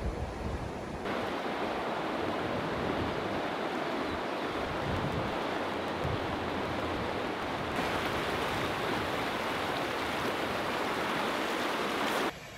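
Steady rush of a fast-flowing river, its character shifting slightly about a second in and again near eight seconds.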